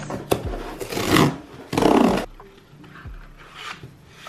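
A cardboard shipping box being torn open by hand: two loud rasping tears about a second and two seconds in, with a few sharp clicks and then quieter rustling of the cardboard packaging.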